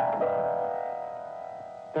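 Piano notes struck into a held chord that rings and slowly fades away.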